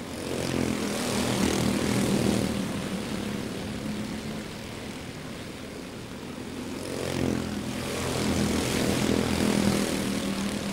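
A pack of quarter midget race cars with Honda 160 single-cylinder engines running together at racing speed, a buzzing multi-engine drone. It swells louder as the pack passes close, about a second in and again near the end.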